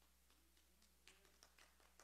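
Near silence: a faint steady low hum, with a few faint ticks in the second half.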